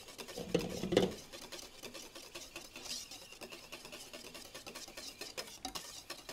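Wire balloon whisk beating a soft cream mixture in a stainless steel bowl: a rapid, steady ticking and scraping of the wires against the bowl, a little louder in the first second. It is the pre-mix of a first third of whipped cream into the base.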